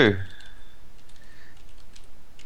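Computer keyboard keys tapped in a short irregular run as a web address is typed.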